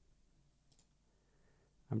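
Near silence with a couple of faint mouse clicks.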